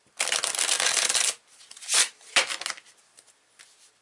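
A deck of blue-backed playing cards being riffle-shuffled: a fast run of flicking cards lasting about a second, then two shorter bursts of card noise as the deck is handled again.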